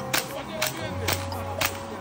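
Sharp cracks of a toy air gun firing at balloon targets, four shots about half a second apart.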